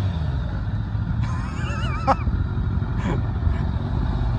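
Campagna T-Rex three-wheeler's motorcycle engine running at low revs, with a short wavering squeal about a second in as the rear tire is spun.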